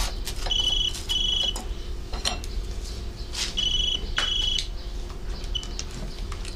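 A telephone ringing with the British double-ring pattern: two pairs of short electronic trills, with the start of a third ring cut short near the end. Light clinks of a knife and plate sound between the rings.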